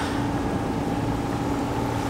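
Sailing yacht's engine running steadily while motoring, a constant hum over a low rumble.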